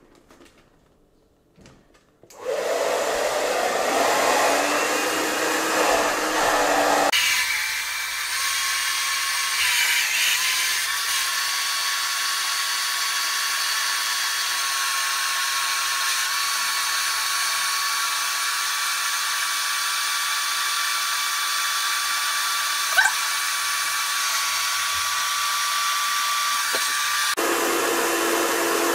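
Hand-held hair dryer running on its cold setting, blowing air into the valve of a gym ball to inflate it. It switches on about two seconds in; about seven seconds in its sound changes abruptly to a steadier, thinner whine carrying a held high tone, with one short click near the end.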